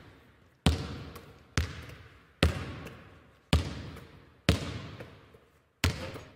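Six single thuds about a second apart, each ringing out with a long echo, like a basketball bounced slowly on a hard court in a large empty hall.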